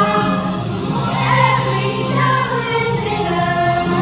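A children's choir singing a song together with musical accompaniment, in a large room.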